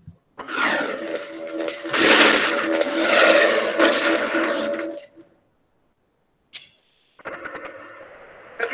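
Opening sting of a television science programme: a whooshing swell of music with a sustained low note, lasting about five seconds before it cuts off, then a brief click.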